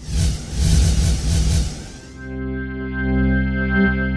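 Production-company logo sting: a pulsing, hissy swell for about two seconds, then a held, distorted chord ringing steadily.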